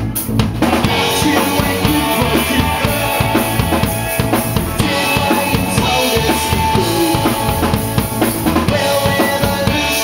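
A live rock band playing loudly, with a drum kit pounding out a steady beat of bass drum and snare under electric guitars, one of them a Telecaster-style guitar.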